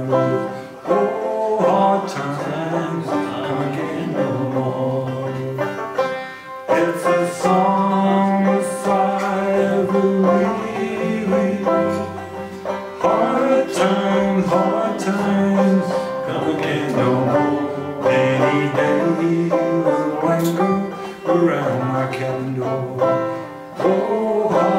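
A man singing a folk song, accompanying himself on a plucked banjo.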